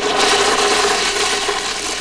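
A conventional water-flushing urinal flushing: a steady rush of water with a faint steady tone under it.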